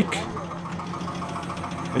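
An engine idling steadily in the background.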